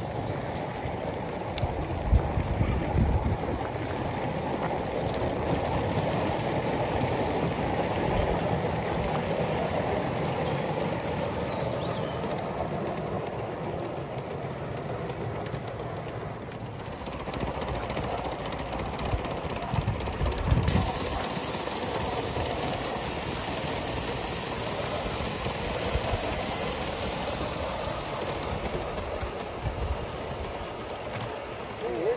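Gauge 1 model train running along an outdoor track, its wheels rolling on the rails in a continuous rumble. A steady high hiss comes in about two-thirds of the way through and fades near the end.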